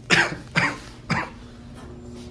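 A person coughing three times in quick succession, the first cough the loudest.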